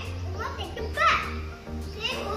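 A young boy speaking, telling a story, with background music underneath.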